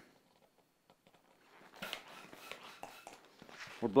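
A hand pump inflating a long twisting balloon: faint puffs of air and rubbery handling noise that begin about halfway through.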